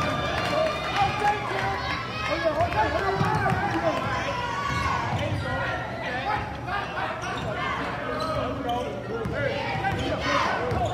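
Many voices chattering and calling out in a gym, with a basketball bouncing on the hardwood court.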